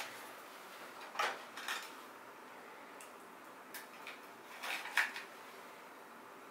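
Small ear-cleaning tools clinking and tapping as they are handled and set down on a tool tray: a few brief, scattered knocks, the loudest cluster about five seconds in.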